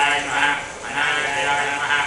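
Male voices chanting Sanskrit mantras in a steady, sing-song recitation, rising and falling in short phrases.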